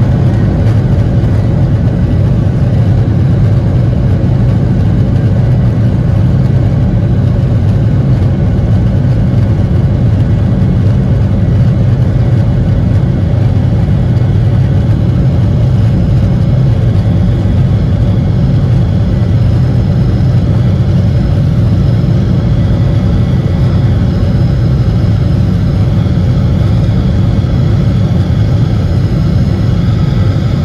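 Boeing 737-800's CFM56 turbofan engines heard loud from inside the cabin, a steady deep rumble as the jet begins its takeoff run. A higher whine comes in over the second half as the engines build power and the plane gathers speed.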